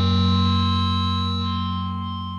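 Final distorted electric guitar chord of a thrash metal song, held and ringing out, slowly fading.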